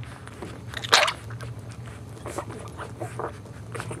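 Newborn Boxer puppies nursing: wet suckling and smacking noises with short, scattered squeaks and whimpers, one louder cry about a second in.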